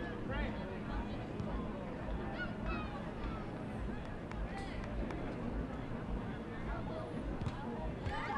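Field ambience: scattered short shouts and calls from distant voices over a steady low hum.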